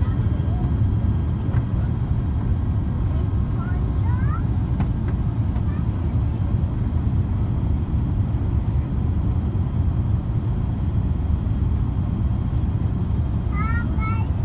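Jet airliner cabin noise on the landing approach: a loud, steady low rumble of the engines and airflow past the fuselage, heard from a window seat.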